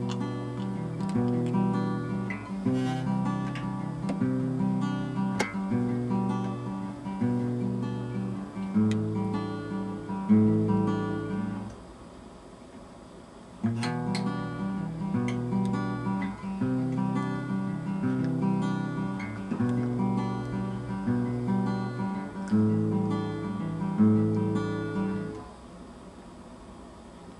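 Acoustic guitar playing a repeating chord progression, chords changing about once a second. It stops for about two seconds near the middle, then the same progression starts again and stops just before the end.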